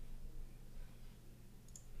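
Faint computer mouse clicks over a low steady hum.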